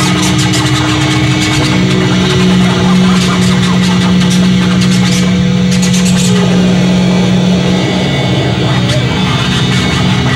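Heavy metal band playing live: heavily distorted electric guitars sustain a low droning chord over drums and crashing cymbals, shifting about two-thirds of the way through.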